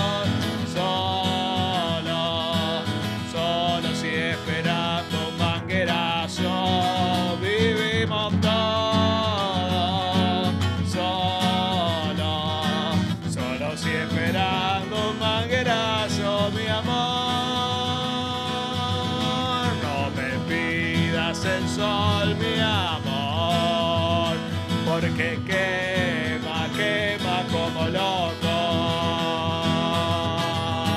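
Acoustic guitar music with a gliding melodic line over it, an instrumental stretch without lyrics.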